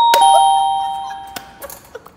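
A two-note ding-dong chime sound effect: a high tone, then a lower one a moment later, both ringing and fading away over about a second and a half.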